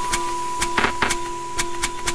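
Minimal electronic track with machine-like texture: a steady high sine tone and a lower held tone run under sparse, dry clicks. A short burst of noise comes a little under a second in.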